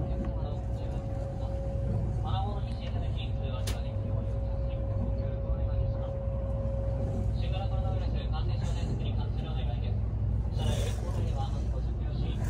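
Cabin noise inside a moving Kintetsu 22600 series electric train: a steady low running rumble. A thin steady tone is held over it until about two-thirds of the way through. Indistinct voices come in at times.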